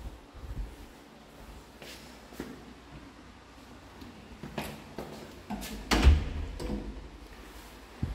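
An interior door being handled and opened: a few scattered clicks and knocks, the loudest a thump about six seconds in.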